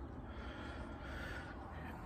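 Faint, steady outdoor background noise with no distinct sound standing out.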